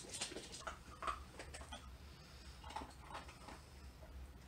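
A dog in the background making faint, scattered short noises, over a low steady hum.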